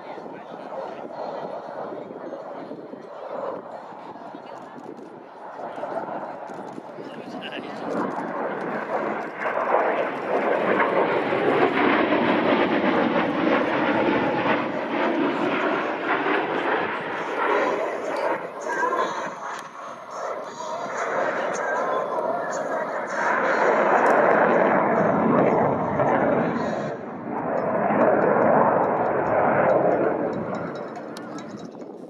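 Jet noise from an F/A-18F Super Hornet's two General Electric F414 turbofan engines as it flies overhead. The noise builds about eight seconds in and is loudest for several seconds after that. It fades, then swells twice more in the second half.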